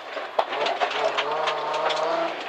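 Rally car engine heard from inside the cabin, holding a steady note, with a single sharp click about half a second in.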